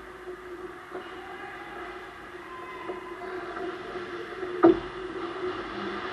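Ice hockey play heard at the net: skates scraping on the ice over a steady rink hum, with one sharp clack a little before the end.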